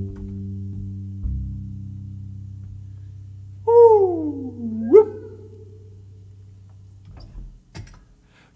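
Upright string bass's last low notes ringing out and slowly fading as a song ends. About four seconds in, one sung vocal swoop slides down and then leaps back up.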